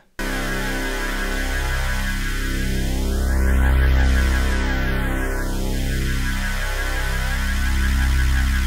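Sustained, thick detuned-unison synth tone from Ableton Wavetable with a resonant notch filter being swept: the notch glides up through the whole frequency range, back down to the low end, then settles in the low mids. The tone swells louder around the middle of the sweep.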